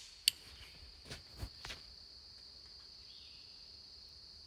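Faint, steady, high-pitched insect chorus. A few faint clicks come in the first two seconds.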